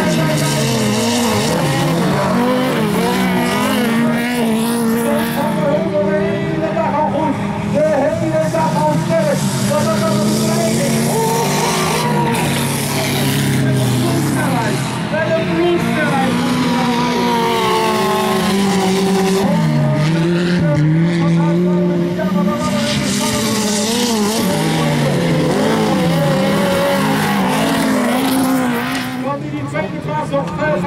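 Several autocross touring cars' engines revving up and down on a dirt track, the notes of more than one car rising and falling over one another.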